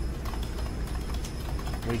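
Computer keyboard keys clicking in a quick, uneven run, about five keystrokes a second, as a search phrase is typed, over a steady low hum.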